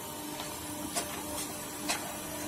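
Hydraulic block machine's electric motor and pump running with a steady hum, with a few faint clicks.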